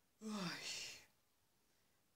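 A short vocal sound from a person, under a second long and falling in pitch, with a breathy ending.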